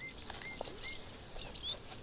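Small birds chirping in the background: a string of short, clear chirps, some of them gliding up or down in pitch, over faint outdoor noise.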